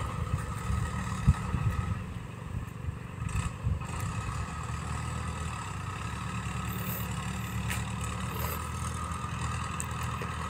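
A tractor's engine running steadily as it works the field, a low, even hum with a few light knocks in the first few seconds.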